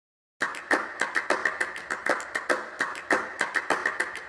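A quick, irregular run of sharp clicks, several a second, starting about half a second in.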